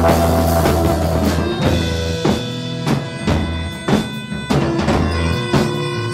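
Live band playing with drum kit and bass guitar: a held low bass note gives way about a second and a half in to a steady pattern of drum hits over sustained higher tones.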